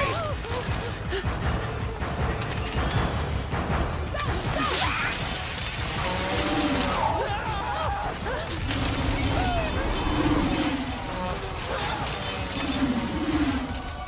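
Film chase soundtrack: dramatic score mixed with crashing and whooshing sound effects, and short voice-like cries a few times in the second half.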